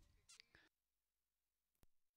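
Near silence, with two faint short sounds in the first second and a faint click near the end.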